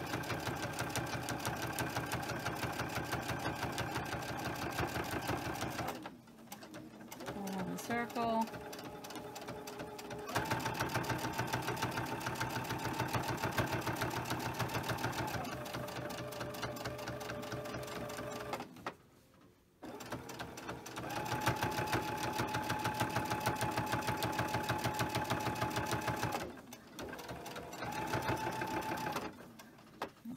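Electric sewing machine top-stitching through layered cotton fabric: a fast, even rattle of needle strokes over the motor's whine. It stops a few times, for a few seconds about six seconds in, for about a second near nineteen seconds, and briefly again near the end.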